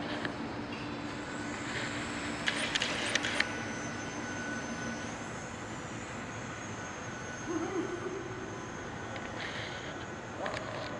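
Small electric motor and propeller of a Hobbyzone Champ RC plane buzzing steadily as it takes off and flies, the buzz strongest for the first five seconds and weaker after. A brief patter of sharp clicks about three seconds in.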